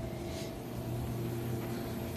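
A steady low mechanical hum with a couple of faint steady tones above it.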